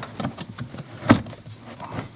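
Plastic cargo-area trim panel of a Tesla Model Y being pulled back by hand: light rubbing and small clicks, with one sharp plastic click about halfway through.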